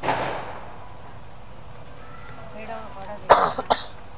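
A short breathy burst at the very start, then two loud, sharp coughs a little after three seconds in, with faint talk among the people standing around.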